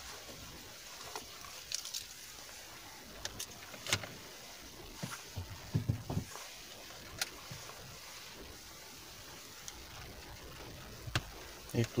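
Scattered faint clicks and taps of a power cable and its connector being handled in a car cabin, over a low steady hiss.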